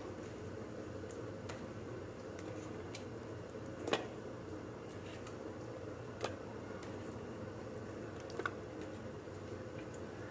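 Scattered light clicks and taps, the loudest about four seconds in, as raw chicken wings are put into a glass bowl of masala paste and a steel spoon knocks against the glass, over a steady low room hum.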